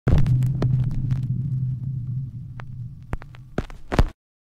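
Intro sound effects: a low hum that starts loud and fades away over about three seconds, with scattered clicks and crackles, ending in a short loud burst of glitch noise that cuts off suddenly.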